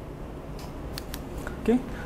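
Lecture-room background hum with three or four faint clicks in the middle, then a man's voice near the end.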